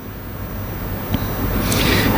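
Low rumble of passing road traffic swelling steadily louder, with a hiss rising over it near the end.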